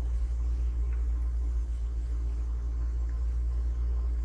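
Steady low rumble of a car driving slowly along a paved road, heard from inside the cabin.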